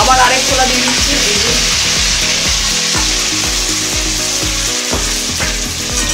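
Chopped food frying in hot oil in a metal wok on a gas stove, sizzling steadily while a spatula stirs it.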